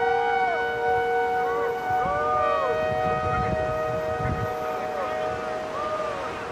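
Synthesized sound-design drone for a title card: several steady held tones with short pitch glides arching up and down over them, above a low rumble.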